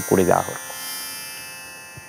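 A man's voice speaking briefly in Tamil. The speech stops about half a second in, leaving only a faint, steady electrical hum.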